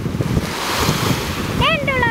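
Surf washing onto the beach with wind buffeting the microphone. Near the end a voice calls out, rising and then falling in pitch.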